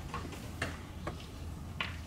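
Chalk tapping and scraping on a blackboard as an equation is written, about four short, sharp clicks spread across two seconds, over a steady low room hum.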